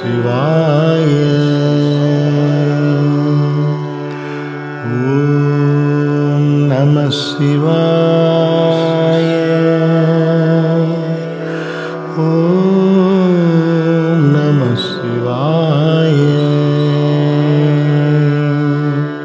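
Devotional Shiva mantra chant sung to Carnatic-style music, with long held notes that bend and waver in places.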